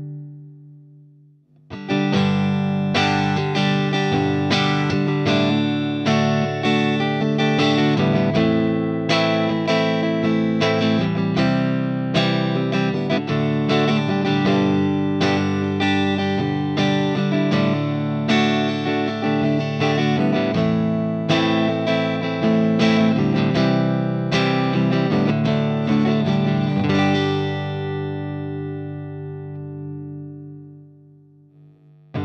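Electric Stratocaster guitar played through a valve guitar amp's clean channel: a held chord fades out at the start, then after a short gap a steady passage of picked chords and single notes begins about two seconds in, ending with a chord left ringing and fading near the end.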